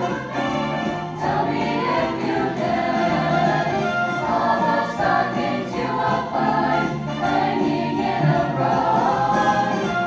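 Mixed choir of young voices singing together, holding notes and moving smoothly from chord to chord at a steady level.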